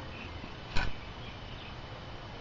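A single sharp click or knock about three-quarters of a second in, over low steady background hiss.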